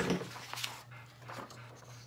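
A dog panting softly, with a thump and rustle of paper being handled right at the start, over a steady low hum.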